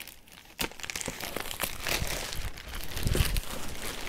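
Clear plastic shrink-wrap being pulled and torn off a cardboard box, crinkling and crackling continuously from about half a second in, with a dull bump near three seconds in.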